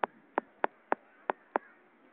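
Six sharp percussive strikes in an uneven rhythm, about three a second, over a faint steady background.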